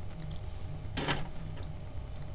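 A soft voice saying "ding" about a second in, imitating the ring bell, over a steady low hum and faint handling of plastic action figures.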